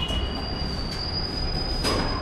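A lift running, with a steady high-pitched whine over a low rumble and a sharp click near the end.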